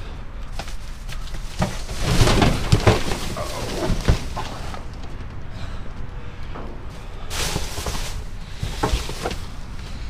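Rummaging in a dumpster: plastic trash bags and cardboard boxes rustling and scraping as they are pushed aside, with several sharp knocks and clunks as items are shifted and one is lifted out.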